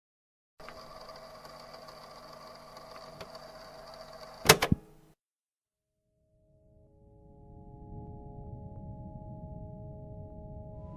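A steady hum with a few held tones, cut off by a short, loud clatter of clicks about four and a half seconds in. After a brief silence, soft music of long held tones fades in and grows louder.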